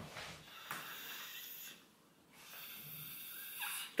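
A man sucking air hard through a drinking straw with his nose, trying to draw cola up from the can: two long, faint breathy inhalations with a short break about two seconds in.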